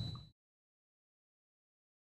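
Silence: a faint room hiss with a thin high tone stops abruptly a fraction of a second in, and the sound track then goes completely dead.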